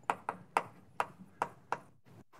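Chalk tapping on a blackboard while writing: about six sharp, separate taps at an uneven pace, each with a short ring.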